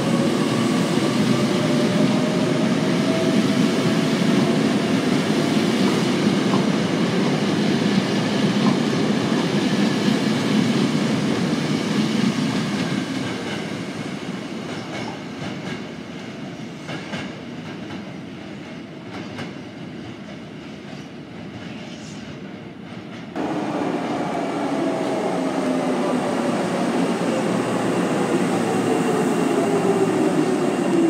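Hankyu electric train running close past the platform, its motor whine rising in pitch as it gathers speed, then fading to a quieter distant train with faint clicks of wheels over rail joints. About 23 seconds in the sound jumps abruptly to another train running in alongside the platform, its motor whine falling steadily in pitch as it slows.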